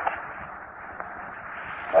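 A pause in a man's recorded lecture: steady background hiss of an old, narrow-band recording, with a small click about a second in. Speech starts again right at the end.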